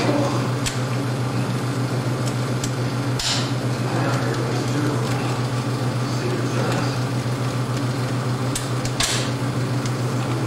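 Steady low hum of running projection-booth equipment, with sharp clicks and two short rattling bursts, one about three seconds in and one near the end, as the 35mm projector's gate and sprocket mechanism is handled.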